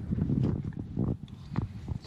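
Quiet sounds of someone tasting pasta: a few soft clicks of the spoon and mouth, under a low hummed "mm".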